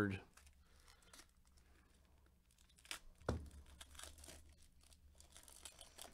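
Faint crinkling of plastic pack wrapping handled by gloved hands, with a single sharp knock about three seconds in.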